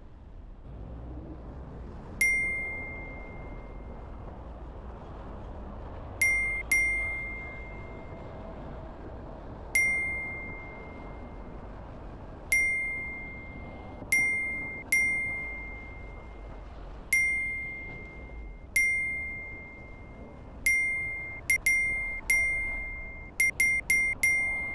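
An added bell-like 'ding' sound effect, one for each vehicle the on-screen counter tallies: sixteen identical ringing dings at uneven intervals, several in quick succession near the end. Underneath is a low, steady background of street and traffic noise.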